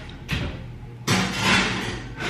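A metal baking sheet being put into a kitchen oven: a short knock, then from about a second in a loud, sustained scraping noise lasting about a second as the tray goes in.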